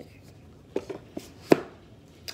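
A few short, sharp taps and clicks as items are put back into an iPhone box and the box is handled, the loudest about one and a half seconds in.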